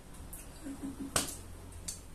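Sounds of someone eating at the table: a brief low closed-mouth hum, then a sharp smack about a second in, with smaller clicks before and after.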